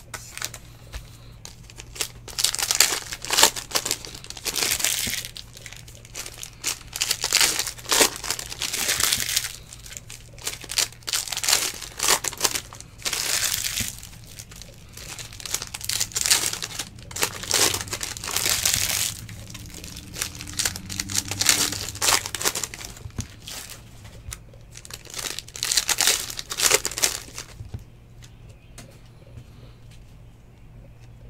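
Foil trading-card pack wrappers crinkling and tearing as packs are ripped open and the cards inside are handled. The sound comes in repeated bursts and dies down near the end.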